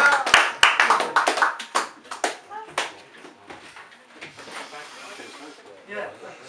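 Audience applauding, the clapping loud at first and thinning out to stop about three seconds in, with voices in the room.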